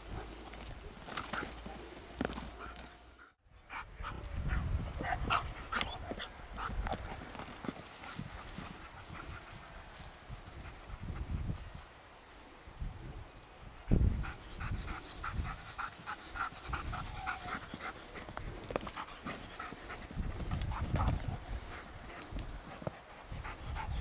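German shepherd panting hard as it runs through dry grass during a retrieve, with repeated short rustles and footfalls. A single sharp thump about fourteen seconds in.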